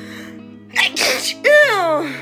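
A woman sneezing: a sharp, noisy burst about a second in, followed by a voiced 'ah' that falls in pitch. The sneeze is set off by swabbing her nose for a rapid antigen test. Soft background music with steady notes runs underneath.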